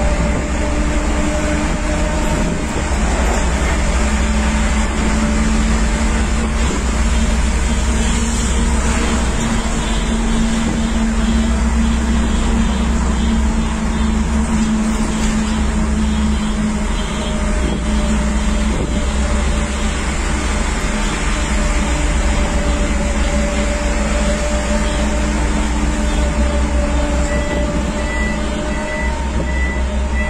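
Steady road and engine noise heard inside a moving car's cabin, with a low engine drone running underneath. Near the end a run of short, high-pitched beeps starts.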